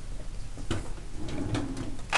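Classroom room noise: a low steady hum with scattered small clicks and knocks, the sharpest a little under a second in and a few fainter ones after.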